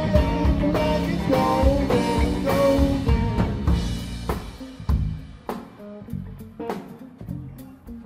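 Live rock band playing: electric guitars, bass guitar and drum kit. About halfway through, the music thins out to separate drum hits over bass notes and becomes quieter.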